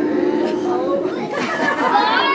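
Many young children's voices chattering and calling out at once, overlapping with no single clear speaker.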